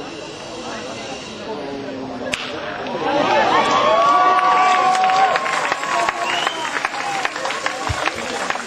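A baseball bat cracks sharply against the pitched ball once, about two seconds in, for a base hit. Then a crowd of voices cheers and shouts, louder than before, with some long held calls.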